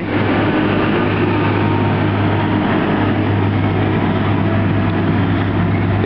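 A steady electric hum with a rushing hiss over it, from the bike's motorized center stand lowering and its air-ride suspension letting its air out.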